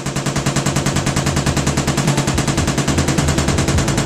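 Belt-fed machine gun firing one long burst of automatic fire, a rapid, even stream of about ten shots a second.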